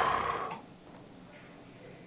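A person's sigh, an exhaled breath trailing off within the first half second, then a faint click and quiet room tone.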